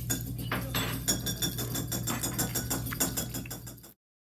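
Quick, uneven clinks and knocks of a metal spoon against a ceramic salad bowl, over a low steady hum. The sound cuts off abruptly just before the end.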